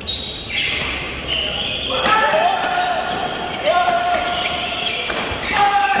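Badminton doubles rally: sharp racket strikes on the shuttlecock every second or so, in a large echoing hall, with drawn-out shouting voices over them.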